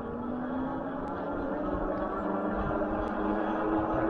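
Electric hub motor of a fat-tire e-bike whining steadily under full throttle on a steep climb, its pitch creeping up slightly as speed builds, over tyre hum and low wind rumble on the microphone.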